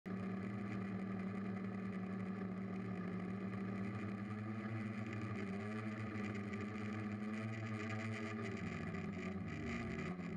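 Electric motors and propellers of a DJI F450 quadcopter humming steadily in flight, heard from its onboard camera. Near the end the pitch bends as the throttle changes.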